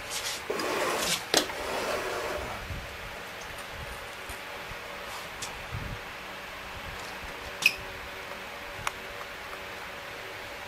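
Handling noise, rustling with a few knocks, for the first couple of seconds while the view is repositioned, then a steady low hum of room tone with two small clicks near the end.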